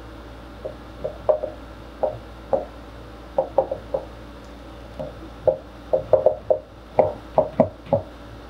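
Dry-erase marker writing on a whiteboard: a run of short squeaky strokes as the letters are formed, sparse at first and coming thick and fast in the second half.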